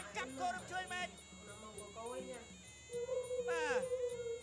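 Traditional Kun Khmer fight music: a nasal reed pipe (sralai) playing a wavering, ornamented melody, then holding one long note from about three seconds in.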